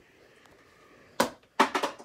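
A small ball rolled into a toy tabletop Skee-Ball game, clacking against the board: one sharp knock just past a second in, then a quick rattle of knocks near the end as it settles into the scoring holes.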